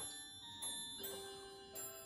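Background music: a slow melody of struck, ringing bell-like notes, a new note starting about every half second and each ringing on.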